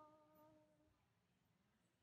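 Near silence, except the faint end of a woman's softly hummed note, which fades out about a second in.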